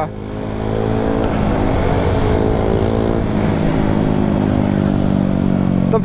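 KTM Duke's single-cylinder engine under hard acceleration, pulling up through its revs over about the first second and then holding high revs. Wind rushes over the microphone at speed.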